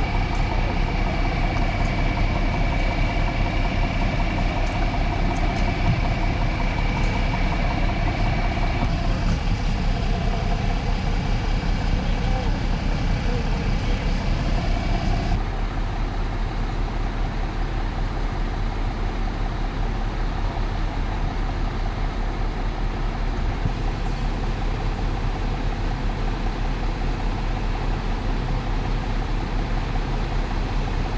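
Fire engine's diesel engine idling with a steady low rumble, with faint voices in the background; the sound changes slightly about halfway through.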